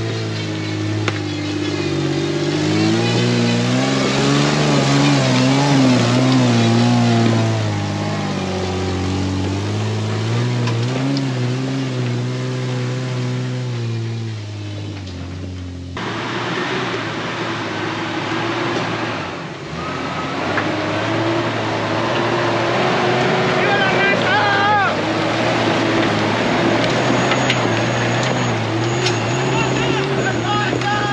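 80-series Toyota Land Cruiser's straight-six engine revving up and down as it works over rough trail, its pitch rising and falling. About halfway through, the sound changes abruptly to an engine running more steadily, with voices calling out over it.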